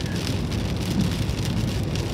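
Rain falling steadily on a moving car's roof and windscreen, heard from inside the cabin over the car's low road rumble.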